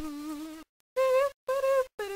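A buzzy kazoo melody of held notes, cut by short sharp silences: a lower note held for over half a second, then two higher notes, then a middle note starting near the end.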